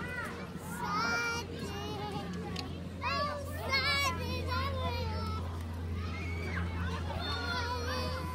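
Young children playing, their high-pitched voices calling out and chattering in short bursts, loudest about three to four seconds in. A steady low hum runs underneath.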